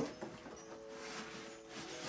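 Cardboard packaging being handled: a sharp knock right at the start and a smaller one just after, then faint scraping and rustling as plates are slid out of their cardboard box. Faint background music runs underneath.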